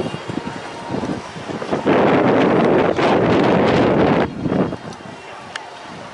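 Wind buffeting the microphone, loudest in one long gust from about two seconds in to just past four seconds.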